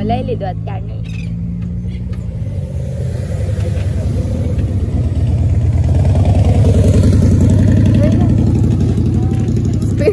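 A car running close by with a steady low hum for the first couple of seconds. It gives way to a low, fluttering rumble of wind on the microphone and road noise that builds to its loudest around seven seconds in.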